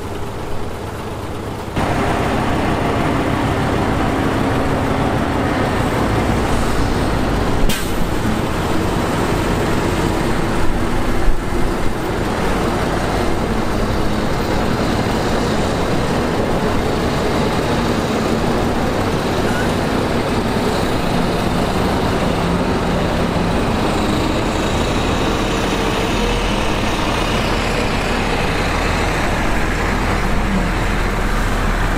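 Crawler bulldozers' diesel engines running steadily under load while pushing dirt, getting louder about two seconds in, with a sharp click near eight seconds.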